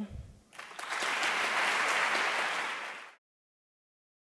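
Audience applauding, starting about half a second in and holding steady, then cut off abruptly just after three seconds.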